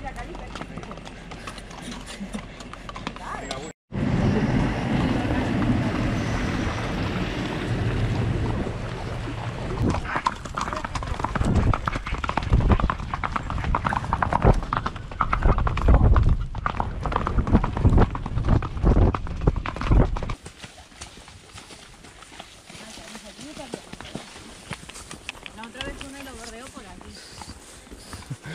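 Horses' hooves clip-clopping at a walk on a dirt and gravel track. Through the middle the hoofbeats are louder and heavier over a low rumble, then fall back to a quieter sound near the end.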